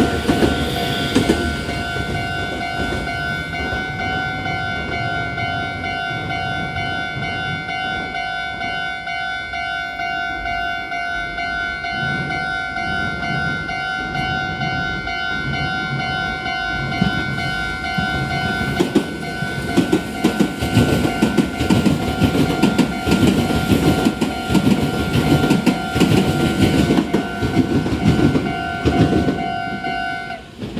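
Railway level crossing warning bell ringing as a steady two-pitched tone that stops right at the end, while trains pass on the Meitetsu main line. Wheels rumble and knock over the rails at the start, and a train's wheels clatter rhythmically over the rail joints through the second half.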